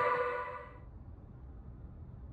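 Electronic intro music fading out within the first second, leaving the faint, steady low rumble of a car driving, heard from inside the cabin.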